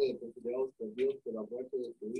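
Speech: a person reading aloud, a steady run of quick syllables, quieter than the preacher's microphone voice.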